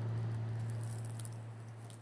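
Faint background hiss over a steady low hum, slowly fading, in a pause between spoken sentences.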